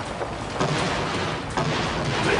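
Action-scene soundtrack of background music mixed with a dense, noisy bed of sound effects, stepping up sharply in level about half a second in and again about a second later.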